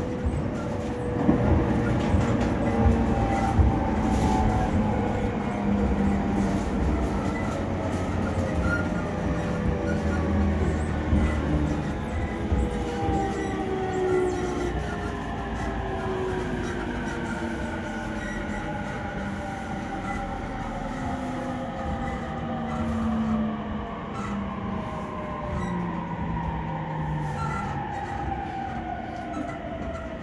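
Inside an E231 series commuter train car with a Hitachi IGBT VVVF inverter: several inverter and traction-motor whine tones fall slowly in pitch as the train brakes for its stop. Underneath runs a steady rumble of wheels on rail.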